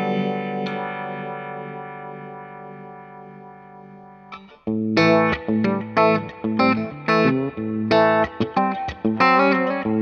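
Electric guitar played through a Blackout Effectors Sibling analog OTA phaser pedal. A chord rings out and fades for about four seconds. After a brief break, a rhythmic riff of short, chopped chords starts.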